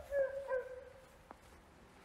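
A dog barking twice in quick succession, the second bark trailing off.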